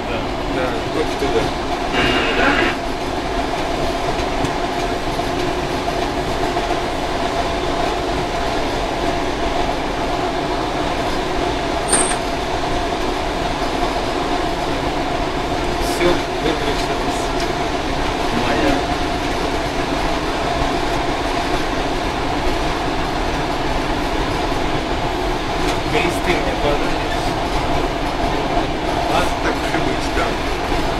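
ER2 electric train running, heard from inside the driver's cab: a steady running noise with a constant hum. A few single sharp knocks come through along the way.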